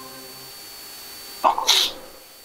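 A man sneezing once, sharply, about one and a half seconds in.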